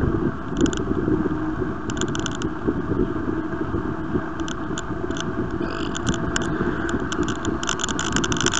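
Bicycle riding noise heard from a bike-mounted camera: steady wind rush on the microphone with tyres rolling on a tarmac lane, broken by short spells of light clicking and rattling.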